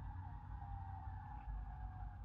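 Fire-engine siren fading into the distance, one faint wail slowly falling in pitch, heard from inside a car over a low rumble.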